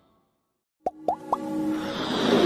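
A short silence, then a click and three quick rising bloop sound effects about a second in, as title music starts and swells.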